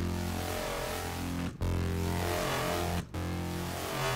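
Serum software synthesizer playing a low sustained note from a hand-drawn custom wavetable, retriggered about every second and a half. Its timbre shifts as the waveform is redrawn, and it sounds kind of vocal.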